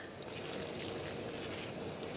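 Faint sloshing and dripping of dye liquid as a skein of wet wool yarn is lifted and turned with tongs in a stainless steel dye pot.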